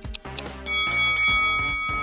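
Ticking countdown music, then about two-thirds of a second in a bright bell chime rings out and holds, marking the end of the countdown timer.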